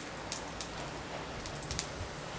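Seeds sizzling in a little hot oil at the bottom of a kadai, a steady hiss broken by scattered crackling pops.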